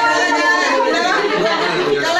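Several people talking over one another: party chatter.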